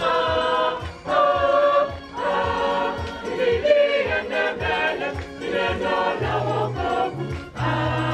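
A choir sings a hymn over a steady beat, with low bass notes coming in about six seconds in.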